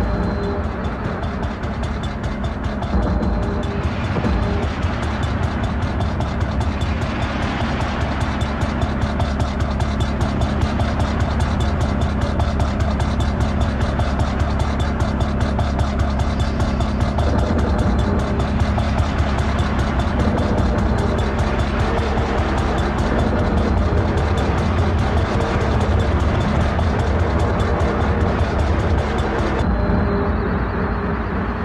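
Loud industrial music with a rapid, machine-like pulse over a steady low drone.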